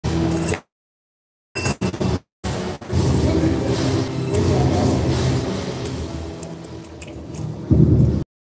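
Busy badminton-hall background: indistinct voices and general hall noise, a loud jumble with no clear single source. It is cut by two spells of dead silence in the first two and a half seconds, with a few sharp clicks between them.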